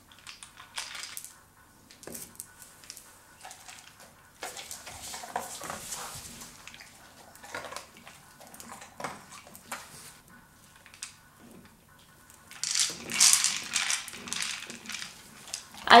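A plastic egg-shaped treat-dispensing dog toy being knocked about on a tile floor by a dog's nose, with the kibble inside rattling and pieces clicking as they drop out onto the tiles. The rattling gets busier and louder about three-quarters of the way through.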